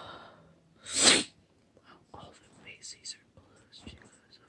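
A person sneezing once, a loud, short burst about a second in, followed by faint soft breathy sounds.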